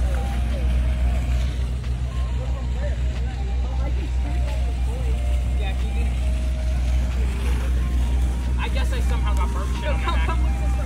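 A steady low rumble with people's voices faint over it. The voices come up more clearly near the end.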